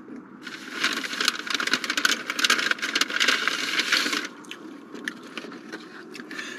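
Paper takeout bag rustling and crinkling as a sandwich box is pulled out of it, a dense crackle of many quick clicks lasting about four seconds, then a few lighter handling clicks.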